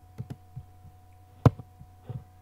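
Computer mouse clicks and soft knocks, the sharpest about one and a half seconds in, over a steady low electrical hum.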